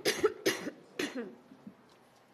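A woman coughing: a fit of several short coughs in quick succession over about a second, each weaker than the last, then dying away.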